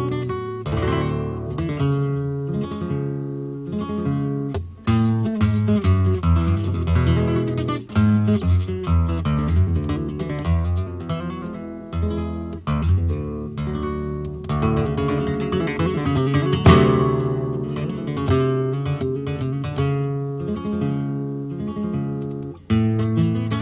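Solo flamenco guitar playing a rondeña: quick fingerpicked runs and arpeggios broken by sharp strummed chords, the loudest about three-quarters of the way through.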